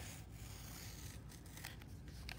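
X-Acto craft knife cutting through cardboard, a faint scraping with a sharp click as it begins.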